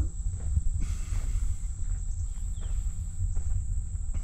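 Wind buffeting the microphone in an uneven low rumble, over a steady high-pitched insect drone.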